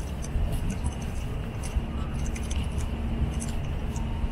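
Outdoor city ambience on the move: a steady low rumble of wind and distant traffic, with light, high-pitched metallic clinks scattered throughout.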